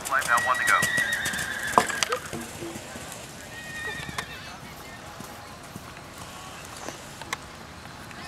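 A horse whinnies, a wavering call over the first couple of seconds, over soft hoofbeats of a canter on arena footing. A sharp knock comes about two seconds in, and after that only faint hoofbeats and a few light ticks remain.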